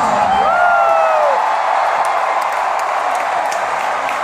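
Large arena crowd cheering and screaming, with a few high shouts rising and falling in the first second or so.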